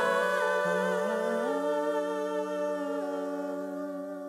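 An a cappella vocal group holding a wordless chord in close harmony. The lower voices slide up to new notes about a second and a half in, then the chord holds and slowly fades away as the song ends.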